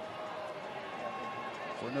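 Steady, fairly quiet stadium ambience from a soccer broadcast: the low murmur of a sparse crowd with a few faint held calls. A commentator starts speaking right at the end.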